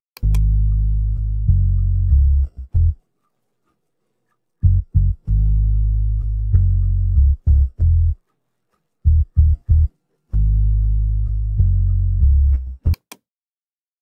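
Isolated bass stem, separated from a full song by FL Studio's stem extraction, playing alone. It is low bass notes only, in phrases of a few seconds broken by short gaps of silence.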